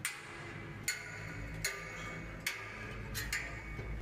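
Sharp metallic clinks from climbing a steel ladder in a safety harness, about five of them a little under a second apart, each ringing briefly.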